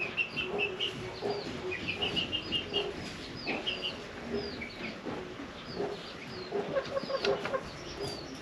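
Domestic chickens clucking in short, repeated low calls, with quick runs of high chirps over them.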